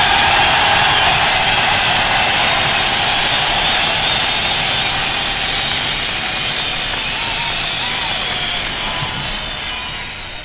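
Dense, loud wash of noise from a live rock band closing out a song: ringing cymbals and distorted electric guitar with a few thin whining tones, fading near the end.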